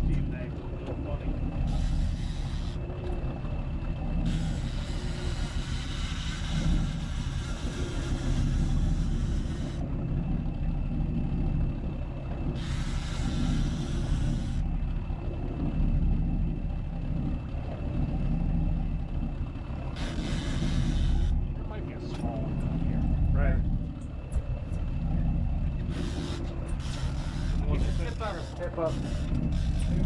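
Boat engine running with a steady low rumble, with several bursts of hiss a few seconds long over it.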